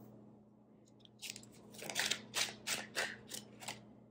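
Tarot cards being handled at a table: a run of quick, crisp card clicks and rustles as cards are worked off the deck, starting about a second in. A faint steady low hum runs underneath.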